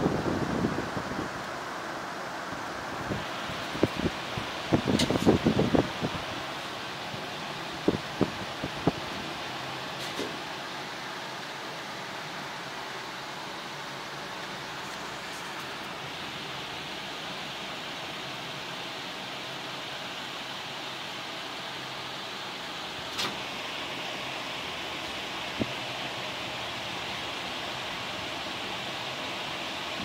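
A steady hiss runs throughout, with rustling and a few knocks in the first several seconds and occasional single clicks later on.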